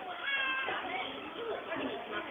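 A short, high-pitched vocal squeal, about half a second long near the start, over a background of people talking.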